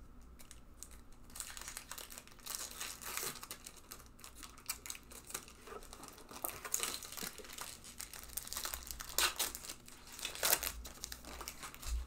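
Foil wrappers of Pokémon trading card booster packs crinkling and tearing as they are opened, in irregular bursts.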